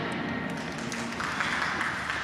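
Audience applause in an ice rink at the end of a figure skating free skate, with scattered claps; the program music stops just at the start.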